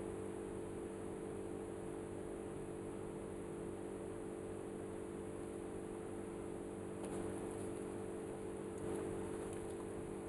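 Faint steady electrical hum over a light hiss, with no distinct events: the room tone of the recording.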